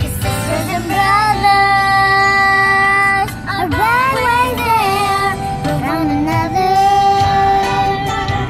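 A young girl singing a song, holding long steady notes with a run of sliding, wavering phrases in the middle. A low rumble of the car cabin runs underneath.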